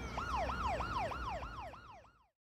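Emergency vehicle siren in a fast yelp, each cycle jumping up and sliding down in pitch about three and a half times a second, fading out toward the end.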